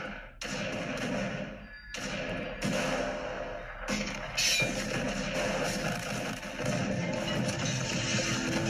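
Film soundtrack: background music broken by several sudden thuds, with brief dips in level about half a second and two seconds in.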